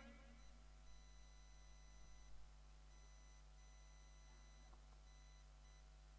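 Near silence in a pause of the narration: a faint steady electrical hum with thin high-pitched whines, as the last of the voice dies away at the start.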